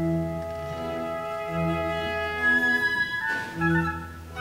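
Opera orchestra playing a slow passage: sustained string and woodwind notes over a low bass note that comes back about every second and a half.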